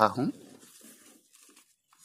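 Faint rustling and crinkling of a square of paper being folded by hand, dying away about a second in.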